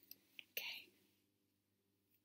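Near silence: room tone, with a faint click and then a short, soft whisper in the first second.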